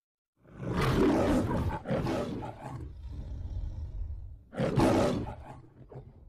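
The MGM studio logo's lion roar: two loud roars in quick succession, a quieter rumble, then a third loud roar that fades out.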